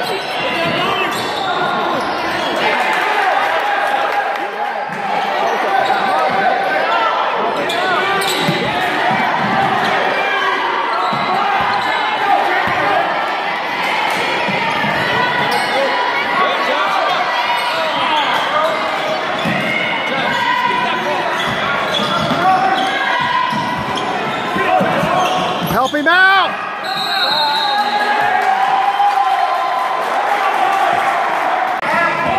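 Gym game sounds: a basketball bouncing on the hardwood court among the continual shouts and chatter of players and spectators in a large echoing hall. Near the end a short, high referee's whistle blast stops play.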